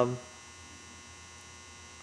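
Low, steady electrical mains hum in a quiet room, with the tail of a spoken 'um' at the very start.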